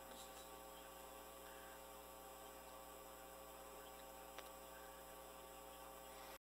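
Near silence: a faint steady hum of room tone, with one faint click about four seconds in.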